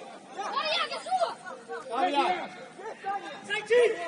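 Players' voices shouting and calling out to each other during play, several short overlapping calls, the loudest just before the end.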